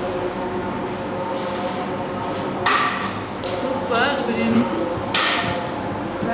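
Steady room hum of a restaurant dining room, with a short low voice sound near the middle and two brief sharp noises about three and five seconds in.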